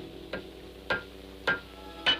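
Blacksmith's hammer striking an anvil at a steady pace: three metallic clangs about half a second apart, the first lighter, each ringing briefly.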